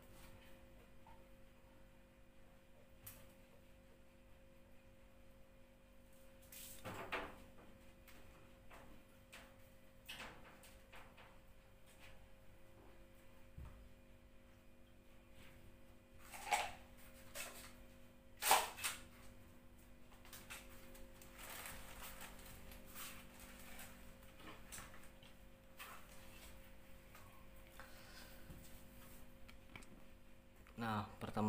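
Handling noises from a large sheet of clear glass being carried and laid flat on a carpeted tile floor: scattered light knocks and scrapes, with three louder knocks about seven, sixteen and eighteen seconds in, over a low steady hum.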